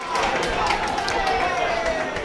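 Steady outdoor noise at a football pitch, with faint distant voices from the field.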